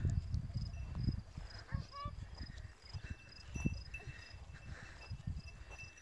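Irregular low thumps and rumble of a handheld microphone being carried across a grassy pasture, heaviest in the first second or so. Faint high insect chirping repeats throughout.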